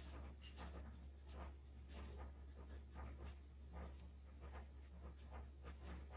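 Soft, faint scratchy strokes of a small blending applicator rubbing charcoal into drawing paper, about two strokes a second, over a steady low electrical hum.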